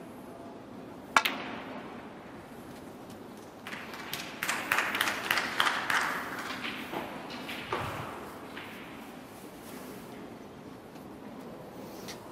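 Snooker balls: a sharp click about a second in as the cue ball is struck, then a cluster of clicks and knocks a few seconds later.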